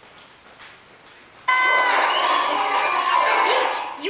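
Quiet room hum, then about a second and a half in a cartoon episode's soundtrack starts abruptly and loudly, bright music with chiming tones, played through laptop speakers and picked up by a camera in the room.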